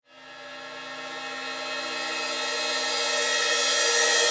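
A trailer-style riser: a steady drone of several held tones with a hiss above it, swelling gradually from silence.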